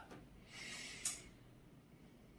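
A man's short audible in-breath, about half a second long and ending about a second in, over faint room tone.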